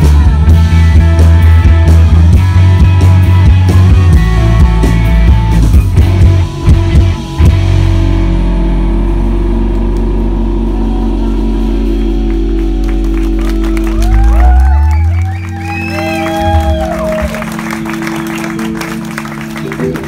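Live rock band of electric guitars, bass, keyboard and drums playing the final bars of a song. About seven seconds in, the drums stop and a held chord rings on, dropping away about fifteen seconds in with some sliding high tones over it.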